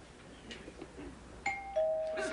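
Two-tone ding-dong doorbell chime about one and a half seconds in: a higher note, then a lower note that rings on.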